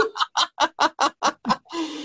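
A person laughing in a rapid string of short ha-ha pulses, about six a second, tailing off into a breathier sound near the end.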